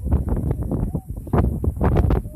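Wind buffeting the microphone: a loud, uneven low rumble in gusts, with irregular crackling.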